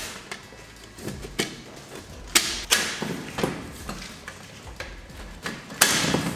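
Aluminium LED-panel mounting frame rails being snapped together with their click system: half a dozen sharp clicks and light knocks at uneven intervals, the loudest about two and a half seconds in and near the end.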